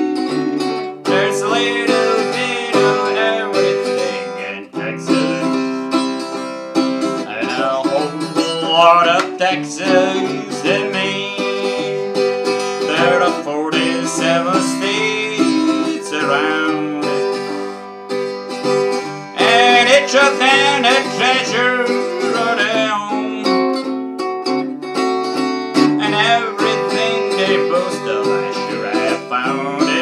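Harley Benton travel-size acoustic guitar with heavy 13-gauge steel strings, strummed and picked through chords, with a man's voice singing along.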